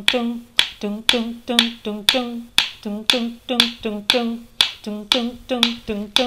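A cappella kitchen groove: a voice singing short 'dun' notes on one low pitch, each struck with a sharp tap from a wooden spoon, in a steady repeating pattern of about three notes a second.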